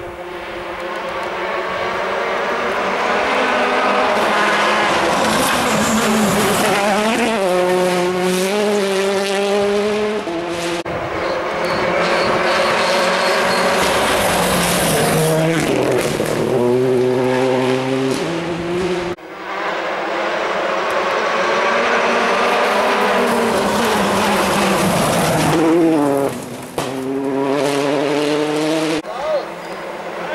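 Rally cars at full throttle passing one after another on a forest stage, engine pitch stepping with each gear change and dropping sharply as each car brakes and passes. A sudden break about two-thirds through starts the next car's run.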